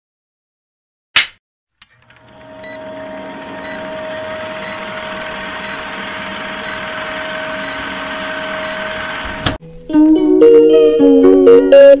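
A clapperboard snap about a second in, then an old film-projector countdown sound effect: a steady whirring hiss with a hum and a tick every second. It cuts off suddenly, and plucked-string music begins about ten seconds in.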